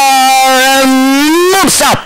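Race caller's voice holding one long drawn-out vowel for about a second and a half, its pitch rising slightly near the end, followed by a short syllable.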